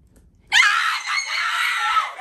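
An excited high-pitched scream that starts suddenly about half a second in and is held for a second and a half.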